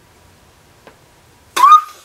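Near silence, then about a second and a half in, a short, loud, high-pitched squeal from a woman's voice that rises in pitch and then holds briefly.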